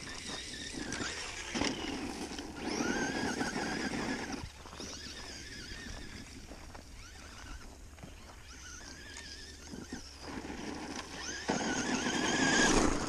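Traxxas Stampede 2WD RC truck's 14-turn brushed motor on 3S, whining as it speeds up, its pitch rising about three seconds in and again late on. Tyres on gravel grow louder near the end as the truck runs close.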